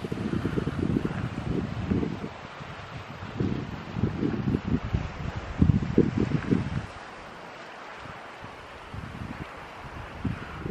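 Wind buffeting the camera microphone in uneven gusts, dying down to a light hiss about seven seconds in.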